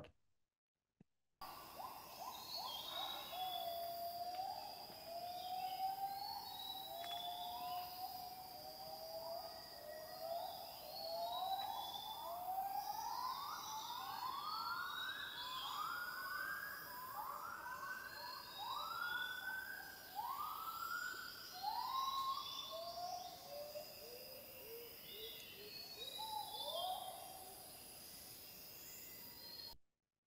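Recording of a hybrid gibbon, a cross of the Bornean white-bearded gibbon and Müller's gibbon, singing its call, faint and distant. The whooping notes rise in pitch and come quicker towards the middle, then fall away lower near the end. Short high chirps and a steady high tone sound faintly above it.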